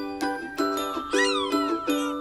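A tinkling, chime-like melody plays note by note, with a short high cry that rises and falls about a second in.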